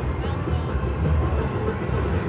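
Electronic slot-machine music over the steady low din of a casino floor, as a bonus-win coin-shower animation plays on the machine.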